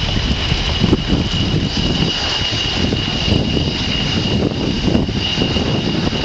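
Twin RD-33 turbofan engines of a MiG-29 SMP fighter on its landing rollout: a steady high whine over a continuous low rumble.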